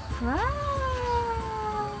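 A woman's voice gives one long drawn-out exclamation, a sung "ta-da": it slides sharply up in pitch, then holds and slowly sinks for over a second.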